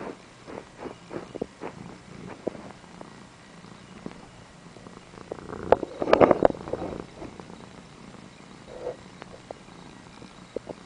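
Seal point ragdoll kitten purring, in short repeated pulses. About six seconds in there is a louder burst of rubbing noise.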